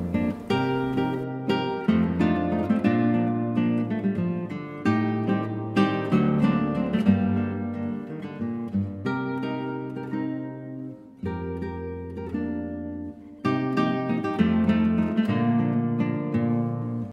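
A pair of classical guitars, Antonio Marin Montero instruments, playing a classical piece together in plucked notes and chords. The playing eases off about two-thirds of the way through, then comes back fuller.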